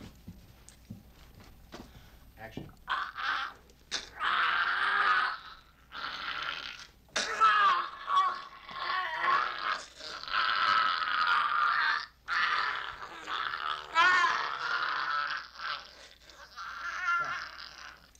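People screaming and shrieking while they grapple. The screams come in long, wavering cries of a second or two each with short breaks between them, starting about three seconds in and running on to the end.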